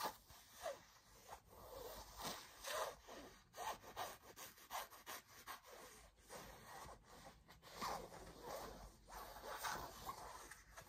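Fingernails scratching and rubbing across a glossy fabric zippered pouch, with handling rustle, in a run of short irregular strokes about one or two a second.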